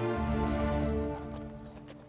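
Thoroughbred yearling's hooves clip-clopping on pavement as it is led at a walk, under a held music chord that fades out toward the end.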